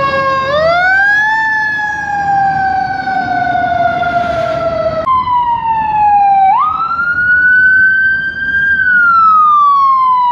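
Emergency sirens wailing. A fire engine's siren rises and then slowly falls in pitch. After an abrupt break about halfway through, an ambulance's siren rises sharply and falls slowly again.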